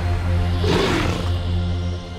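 Music holding a steady low chord, with a big cat's roar laid over it as a sound effect for about half a second near the middle.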